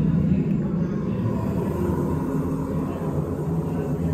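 A steady low rumble of ambient noise inside a themed cave-like queue, with no distinct events.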